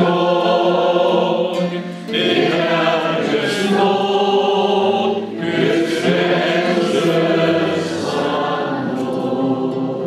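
Men singing a slow hymn to acoustic guitar accompaniment, in phrases broken by short pauses for breath. The last phrase fades out near the end.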